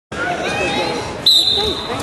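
A referee's whistle blown once, a single steady shrill tone starting about a second in and held for most of a second, the loudest sound here. Spectator voices can be heard underneath.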